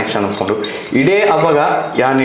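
Light metallic clinks of a stainless steel water bottle being handled, under a man talking.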